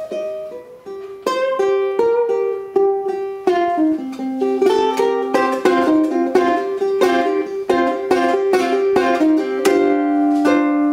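A tiger-stripe myrtlewood ukulele played fingerstyle with no singing. A note is left ringing and fading in the first second, then a steady run of picked single notes and chords begins just after one second in.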